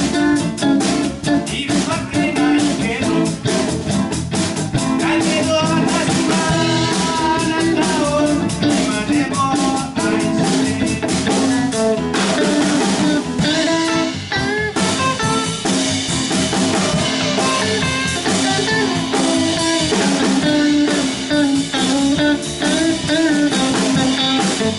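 Live band playing: an electric guitar takes the lead over a drum kit and keyboard, with bending guitar notes and no vocals.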